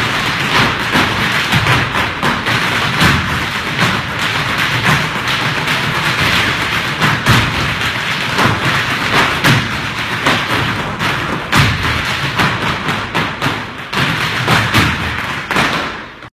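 Hard shoes of a group of Irish dancers striking the floor together: a dense, rhythmic clatter of taps and stamps.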